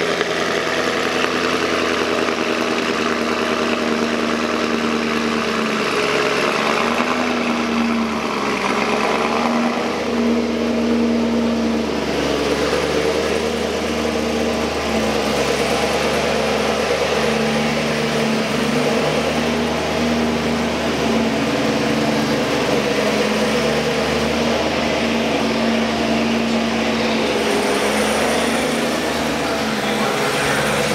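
Car engine idling and running steadily, its pitch wavering up and down slightly now and then.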